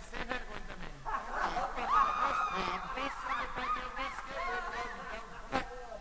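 A voice in quick, high, rising-and-falling glides from about a second in, a repentista's embolada vocal from a recording.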